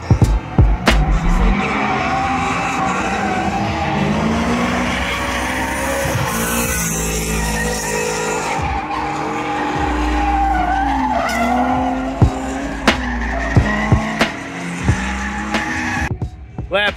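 Drift cars sliding through a corner on track: engines revving up and down with tyres squealing as they slide, and a few sharp cracks in the last few seconds.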